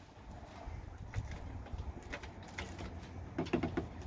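Plastic cap and seal of a 5-litre white vinegar jug being worked open by hand, with a scatter of small plastic clicks and crackles, busiest near the end.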